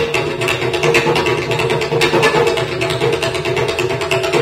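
Carnatic classical music in raga Saramathi: a bamboo flute melody over a steady drone, with scattered percussion strokes.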